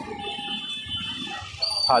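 Busy street ambience: background crowd chatter and passing traffic, with thin high steady tones, one of them starting near the end.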